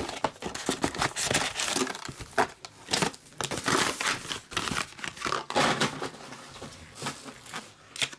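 Plastic wrap and foil trading-card packs crinkling and crackling irregularly as they are handled.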